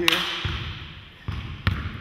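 A basketball bouncing on a hardwood gym floor, with a few separate bounces in the second half.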